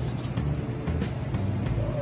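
Wire whisk stirring a vinaigrette in a stainless steel bowl, with faint strokes against the metal, over background music and a steady low hum.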